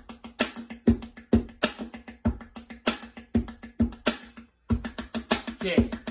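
Pen tapping on a wooden tabletop: a fast, drum-like beat of sharp clicks and knocks, with heavier hits about twice a second. The sound cuts out briefly about three-quarters of the way through.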